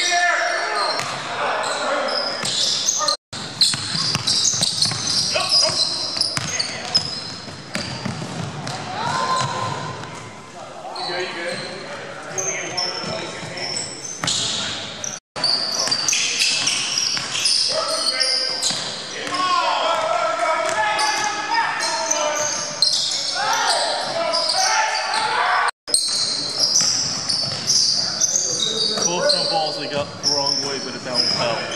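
Basketball being dribbled and bounced on a hardwood gym floor, with sneakers squeaking and players shouting, echoing in a large hall. The sound drops out to silence for a split second three times.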